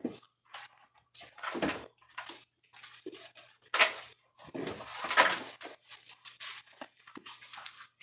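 Irregular rustles and soft knocks, like objects being handled, with a faint low hum underneath.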